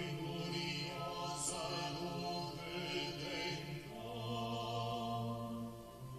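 Voices singing a slow hymn in long held notes, with the harmony shifting to lower notes about four seconds in.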